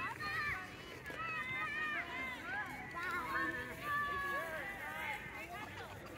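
Faint, distant voices of other people talking and calling out, well below the level of nearby cheering.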